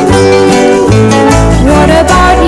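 Instrumental passage of a 1960s pop song: guitar over a bass line, with a note gliding upward near the end.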